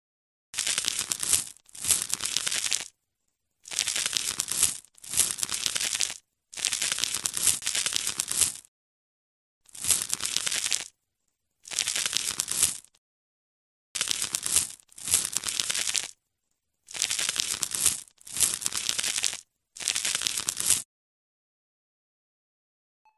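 Crackly scraping and tearing sound effect of a knife scraping off a crusty layer, in about a dozen separate strokes of about a second each with silence between.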